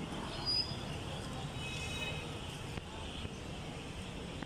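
City street traffic at night: a steady low hum of motor scooters riding along the road, with faint voices in the background.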